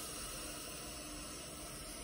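A long, slow deep breath taken during a breathing meditation: a steady, airy hiss.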